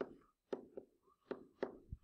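A handful of faint, short taps and clicks, spaced irregularly: a stylus tapping on a tablet screen while handwriting.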